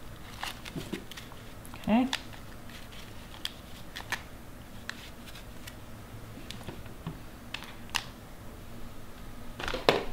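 Scattered light clicks and rustles of a plastic seed-starting cell pack being filled with moist potting mix and handled, with a sharper knock near the end as the pack is set down.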